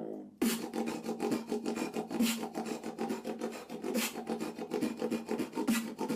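Human beatboxing: a steady low buzzing hum held under a fast stream of mouth clicks and snares, with a few stronger accents. It starts about half a second in, after a brief gap.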